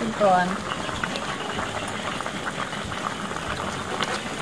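A wide steel pot of spicy pork lung curry bubbling on the stove: a steady bubbling hiss with many small pops.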